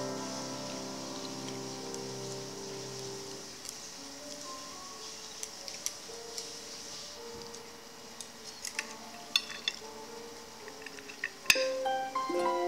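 Soft background music with sustained notes, under light clinks and taps of utensils against a ceramic plate. The clinks cluster about two-thirds of the way in, and a sharper click comes just before the end.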